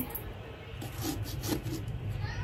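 Small pumpkin-carving saw sawing through a pumpkin's rind and flesh in a few short strokes.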